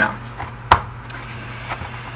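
Sheets of cardstock paper being handled and turned over on a tabletop: soft paper rustle with one sharp tap or snap of the paper a little under a second in.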